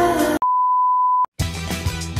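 Music cuts off and a single steady electronic beep sounds for just under a second, a flatline-style sound effect for the drone having 'died'. Then upbeat music starts.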